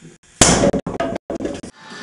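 A sudden loud crash-like noise about half a second in, broken up by abrupt cuts into several short pieces, then music fading in near the end.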